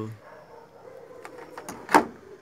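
Handling noise from a small plastic-cased neon inverter and its wires being turned over in the hand: a few faint ticks, then one sharp click near the end.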